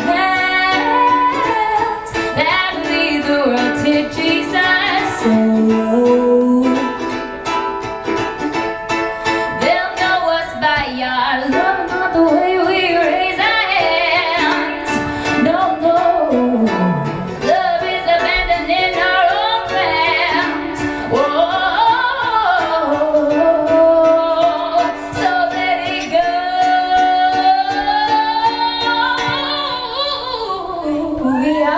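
A woman singing live into a microphone while strumming a ukulele, her voice carrying a gliding melody over the steady chords.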